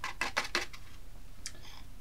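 Paper packet of hot chocolate powder crackling as it is shaken out over a ceramic mug. A quick run of crisp crinkles dies away in the first half-second or so, followed by a single light click.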